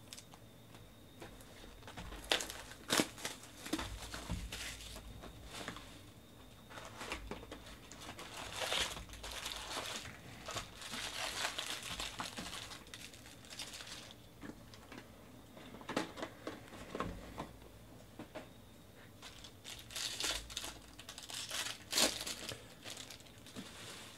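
Foil wrappers of 2018 Bowman Jumbo baseball card packs crinkling and tearing as they are pulled from the box and ripped open, in several bursts with short quieter gaps and a few sharp crackles.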